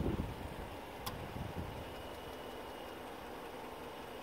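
Car engine idling, a low steady rumble, with one faint click about a second in.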